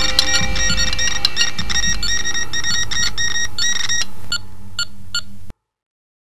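Rapid electronic beeping from a laboratory instrument over a low steady rumble. It thins to a few separate beeps and cuts off suddenly near the end.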